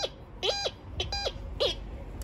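TX-850 metal detector sounding four short beeps about twice a second as its coil is swept through a dug pit, each a steady tone that slides up at the start and down at the end. The beeps signal metal in the pit, where the whole hole seems to ring.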